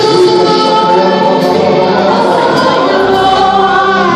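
Gospel worship singing: a lead voice on a microphone with several voices singing together, long held notes that glide between pitches.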